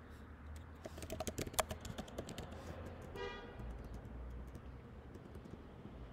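Faint, irregular computer clicking, a quick run of key and button clicks in the first half, while the web page is scrolled. A brief faint pitched tone comes about three seconds in.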